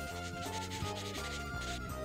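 A Prismacolor marker's brush nib rubbing across paper in coloring strokes, over light background music with a regular beat.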